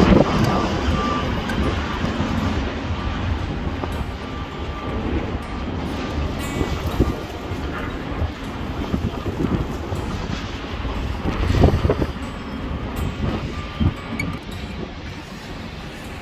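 Strong gusty wind buffeting the microphone on a high-rise balcony: a rumbling rush that rises and falls, with a stronger gust about three-quarters of the way through.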